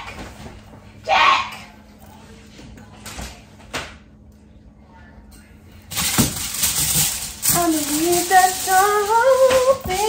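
A woman humming a tune through the last few seconds, her pitch stepping up and down, over a steady hiss that starts suddenly about six seconds in. Before that there is a brief vocal sound and a couple of light knocks.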